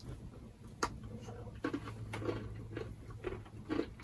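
Chewing and crunching a bite of a Heath bar, brittle toffee in milk chocolate, heard as a handful of short, separate crunches.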